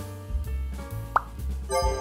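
Background music with sustained notes. About a second in comes one short, quick upward blip.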